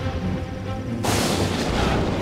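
Dramatic background score mixed with deep thunder-like booming rumbles. About a second in, a loud rushing surge starts suddenly.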